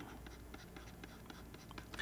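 Faint stylus taps and light scratches on a pen tablet while handwriting is written, over a low steady hum.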